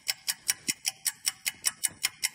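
Clock ticking sound effect, a fast, even run of sharp ticks about six a second, used as a comic cue for time passing while a tree grows.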